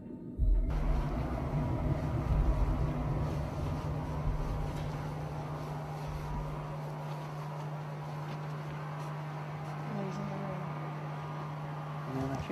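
A steady low electrical hum under hiss, with a low rumble of handheld-camera handling during the first half that dies away; faint voices come in near the end.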